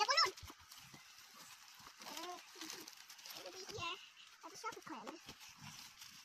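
Young children's high voices babbling and calling out in short bursts, loudest just at the start, over the faint crinkle of a plastic mailer bag being unwrapped.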